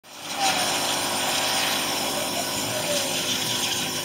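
Small two-stroke petrol engine of a large-scale RC buggy running steadily with a buzzing note.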